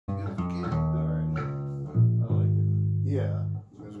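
Acoustic and electric guitars played together in a small room: a run of held notes over a deep bass, the pitch changing every half second or so, stopping about three and a half seconds in. A man's voice starts right at the end.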